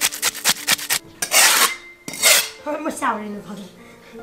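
A cleaver blade scraped hard and fast along the skin of a large fish, rasping off its scales, about eight short strokes a second for the first second, then two longer rasping strokes.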